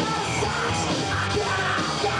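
Live hard rock band playing loud: electric guitars, bass and drums, with a singer yelling over them.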